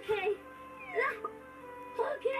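Short squeaky, meow-like voice sounds: one at the start and a rising squeal about a second in, over soft background music.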